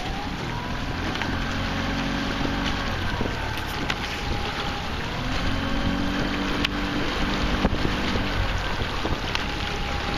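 Small outboard motor of a coaching launch running, its pitch holding steady through two spells of a few seconds each, with wind rumbling on the microphone and a few sharp knocks.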